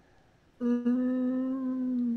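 A person humming a held, thoughtful "hmmm" at one even pitch, starting about half a second in and lasting about a second and a half.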